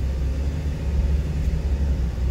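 Low, steady rumble of a delivery truck's engine and running gear, heard from inside the cab.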